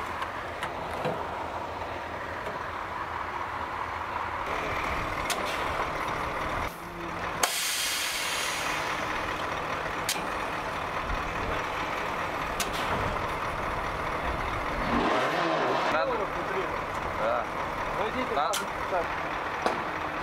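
Truck engines and fuel-pumping machinery running steadily during refuelling, with a sudden loud hiss of released air about seven seconds in.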